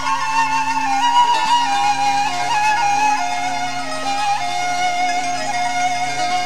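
Instrumental passage of a Zaza-language folk song: a sustained, ornamented lead melody steps gradually downward over a steady low drone.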